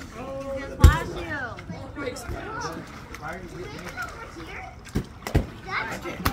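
Voices of people and children playing in a swimming pool, chattering and calling over each other, with a few sharp short knocks, the loudest about a second in and two close together near the end.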